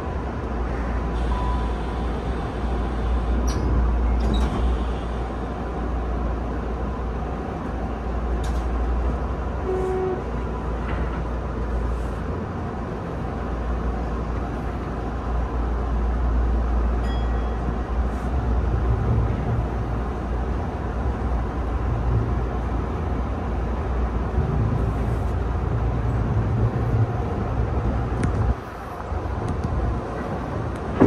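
Tokyu new 5000 series electric train running, heard from inside the driver's cab: a steady low rumble of wheels on rail and running gear, with a few faint clicks along the way.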